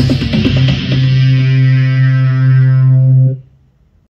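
Roland MC-101 groovebox playing a track: a few last drum hits, then one long, low synth note that cuts off suddenly about three and a half seconds in. The sound is distorted, played out of broken speakers and picked up by a phone microphone.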